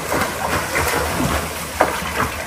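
Pool water splashing from a swimmer's front-crawl strokes, an irregular run of short splashes over a steady rushing noise.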